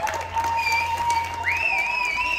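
Audience applauding and cheering as a contest winner is called up. A high, wavering cheer joins in from about the middle.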